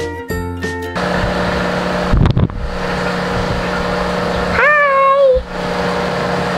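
Background music that cuts off about a second in, giving way to a steady hum and hiss of room noise. A thump comes about two seconds in, and a short high-pitched voice-like call near the end.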